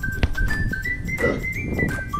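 Background music with a stepping melody. About a second in, a Siberian husky puppy gives a short vocalization over it.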